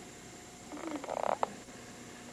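A sleeping newborn baby gives a short raspy grunt about a second in, followed by a single sharp click.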